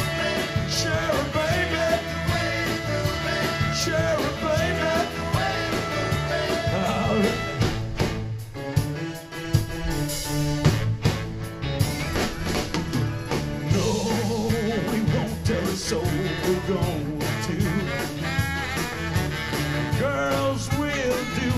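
Live rock band playing mid-song through PA speakers: guitars, bass and drums keep a steady groove under a wavering lead melody line. The sound thins out briefly about nine seconds in.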